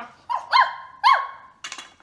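A person imitating a small dog's bark: three short, high yaps, each dropping in pitch, the last the loudest.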